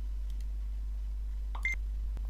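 Steady low electrical hum with a few faint clicks, then one short high beep about one and a half seconds in.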